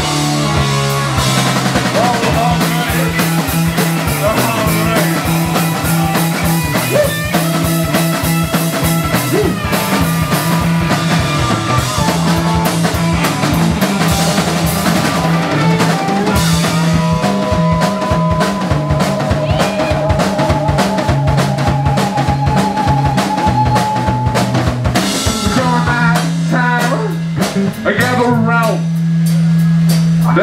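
Live garage punk band playing an instrumental passage: a busy drum kit, distorted electric guitar and a repeating bass line. In the second half a long note is held, wavering toward its end.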